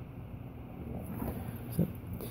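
Quiet, steady low background rumble of room noise, with a single short spoken word near the end.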